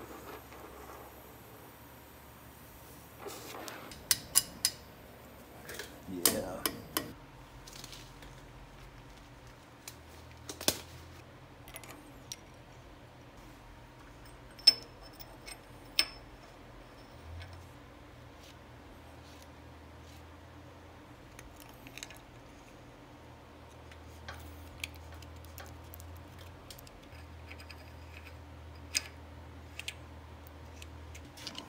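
Scattered metallic clinks and taps of steel hub parts and studs being handled and set down on a truck's front wheel hub, a few sharp ones standing out, over a faint steady background hum.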